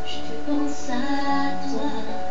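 A girl singing a slow French song over instrumental accompaniment. She holds a sung line that wavers in pitch, starting about half a second in.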